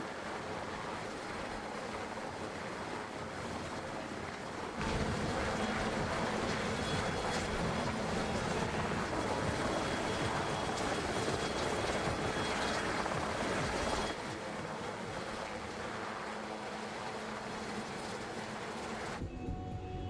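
Westland Sea King helicopter hovering close by, its rotor and turbines making a steady rushing noise. The noise grows louder about five seconds in, drops back near fourteen seconds, and cuts off just before the end.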